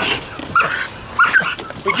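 Pit bull puppy whining and yipping, a few short high-pitched cries, worked up with prey drive by a live muskrat in a cage trap held just out of her reach.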